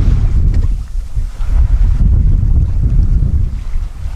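Wind buffeting the microphone out on open water, a loud, gusty low rumble that eases briefly about a second in, over the wash of choppy sea.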